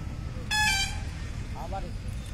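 A short vehicle horn toot about half a second in, over a steady low outdoor rumble.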